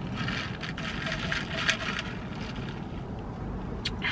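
Ice cubes rattling and scraping inside a plastic cup as an iced coffee is stirred with a straw, busiest in the first two seconds, then a single sharp click near the end, over a steady low hum.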